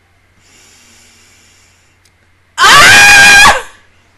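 A woman's high-pitched scream, about a second long and loud enough to distort, its pitch climbing at the start and then held.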